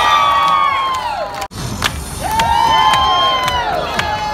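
A crowd of many voices cheering together in a long rising, held and falling shout. It cuts off abruptly about a second and a half in, and a second cheer of the same shape follows.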